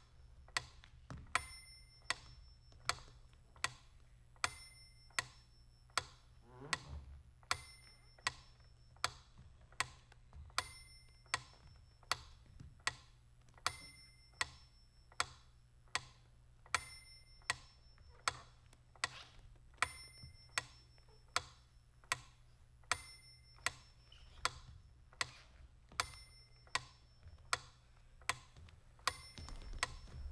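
Steady, metronome-like ticking, a little under two ticks a second. About every three seconds a brighter, ringing accented tick stands out, and a low hum runs underneath.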